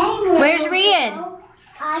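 Toddler's high-pitched wordless squeal, its pitch wavering up and then sliding down over about a second.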